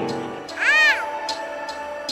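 Background music with a light ticking beat; about half a second in, a short squeaky, meow-like cry sound effect rises and falls in pitch and stands out as the loudest sound.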